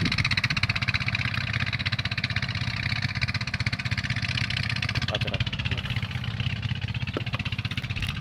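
A small boat engine running steadily at an even speed, a continuous fast mechanical rattle, with a few faint knocks about five and seven seconds in.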